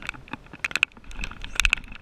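Spinning reel clicking in short irregular bursts as a hooked mangrove jack is fought on the line, over a low rumble of wind or handling on the microphone.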